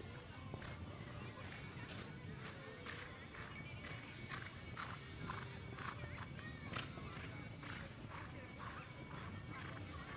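Hoofbeats of a show jumper cantering on the arena footing, a regular clopping at about two to three beats a second, over background music.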